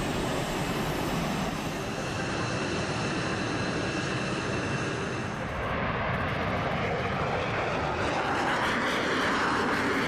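F/A-18 Super Hornet-type twin-engine jet fighter on its takeoff run and climb-out: a continuous loud jet roar with a faint high whine over it in the first half. From about seven seconds in the roar turns brighter and harsher as the jet climbs past.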